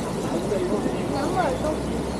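Quiet voices talking at a table, with short bits of speech about half a second in and again past the middle, over a steady rushing background noise.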